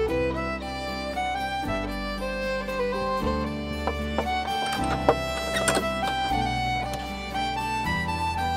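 Background music led by a bowed-string melody over a steady bass, with a few sharp clicks about five seconds in.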